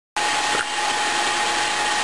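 Vacuum pump running steadily, an even hiss with a steady whine, holding a degassing chamber at full vacuum of about 29 to 30 inches of mercury. A brief click about half a second in.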